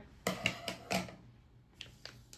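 Thin clear plastic pouch crinkling and crackling as a miswak stick is handled and drawn out of it: a few sharp crackles in the first second and one more near the end.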